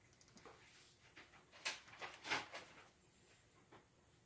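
A few faint, short clicks and taps, the loudest about two and a quarter seconds in, in a quiet small room.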